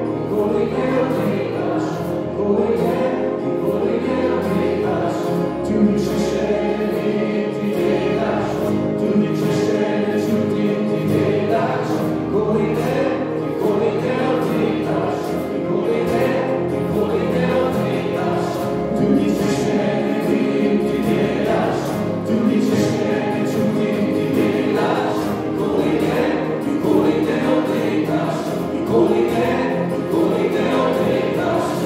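Live worship song: several voices singing together, accompanied by strummed acoustic guitars and a keyboard, with a steady strumming rhythm.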